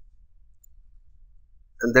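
A single computer mouse click, as an editor tab is clicked to open another file, followed by a faint low hum.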